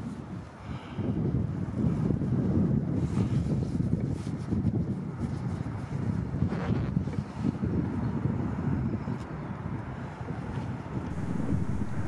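Strong wind buffeting the microphone in gusts, a low rumbling roar.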